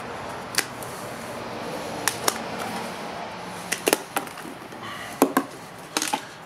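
Dry white granular material poured from a plastic tub into a plastic bowl: a steady hiss of pouring for the first few seconds, then a series of sharp taps and clicks as the tub is knocked to empty it.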